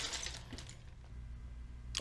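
Rustling of a plastic bag of Lego parts fading out at the start, then a quiet room with a faint steady low hum and a few faint light clicks.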